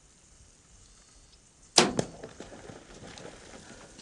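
Compound bow shot at a warthog: two sharp cracks about a quarter second apart, the string's release and the arrow striking the animal's shoulder, followed by the warthog scrambling off through loose dirt.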